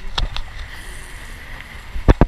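Kiteboard planing over choppy water: a steady rush of water and wind buffeting an action-camera microphone, with two sharp knocks in quick succession about a quarter second in.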